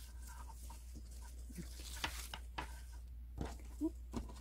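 Faint rustling and light ticks of grosgrain ribbons being handled and slid onto a plastic clothes hanger, over a steady low hum.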